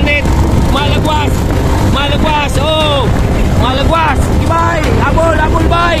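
Steady low wind and vehicle rumble on the microphone of a moving vehicle, with a voice talking loudly over it throughout.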